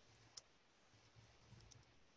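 Faint computer keyboard keystrokes while a short name is typed, a few soft clicks against near silence.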